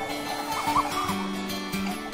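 Background music with steady held notes and a wavering higher melody.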